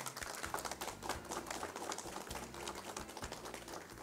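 Applause from a small group of people: many quick, scattered hand claps.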